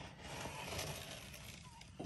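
Faint rustling handling noise that swells about half a second in and then fades.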